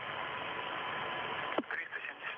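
Steady radio static hiss on an open communications loop, with a faint steady tone in it, broken by a sharp click about a second and a half in.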